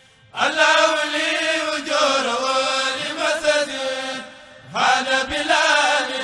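Voices of a kourel chanting a Mouride khassida in Arabic, drawn-out melodic lines without instruments. The phrase starts about half a second in, breaks for a breath about four seconds in, and the next line begins.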